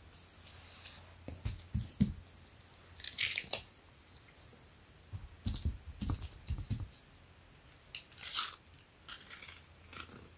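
Hands smoothing and patting a cotton T-shirt laid flat on a table: soft swishes of fabric brushed by a palm, with dull thumps in between and a few light clicks near the end.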